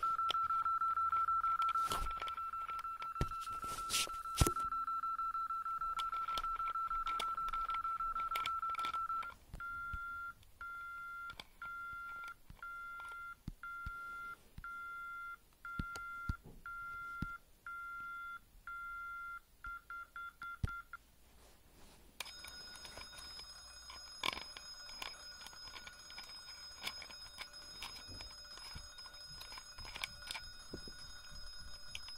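Gent electronic alarm sounder going off: a steady high tone for the first nine seconds or so, then a pulsed beep a little over once a second. After a short break about two-thirds in, a different, shriller steady tone starts. Scattered handling clicks and knocks sound over it.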